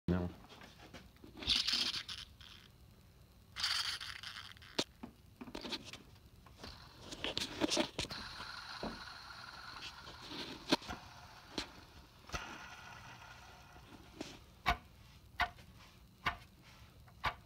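Gates timing belt idler pulleys on a Subaru engine spun by hand, their bearings giving a gritty, rasping whir in several short spins and one longer spin with a steady ringing tone that fades over a few seconds, with sharp clicks from the pulleys being handled. After 60,000 miles the owner judges all of the idler bearings bad.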